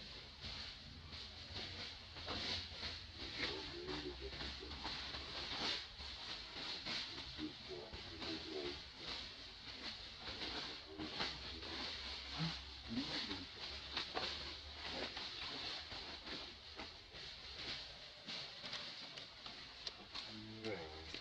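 Scattered crackles and rustles of dry leaf litter as macaques shift about, over a steady high hiss, with a few short low calls.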